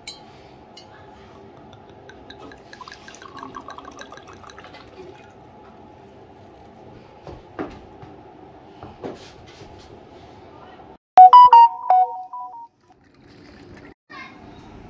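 Red wine poured from a bottle into a glass, a gurgling pour that rises in pitch as the glass fills, followed by a couple of light knocks. About eleven seconds in comes a loud burst of short ringing tones.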